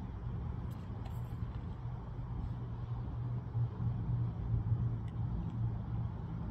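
A vehicle engine idling, a steady low hum, with a few faint metallic clinks about a second in.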